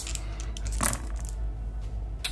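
A handful of six-sided dice thrown into a padded dice tray, clattering briefly about a second in.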